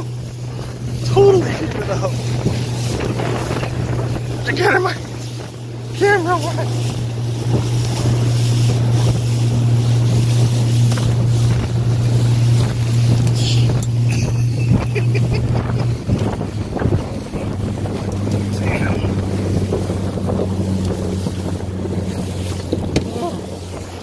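Yamaha outboard motor on a small Boston Whaler running steadily under way at sea, with wind and water rushing past the hull. About two-thirds of the way through the engine's hum drops to a lower note as it eases off.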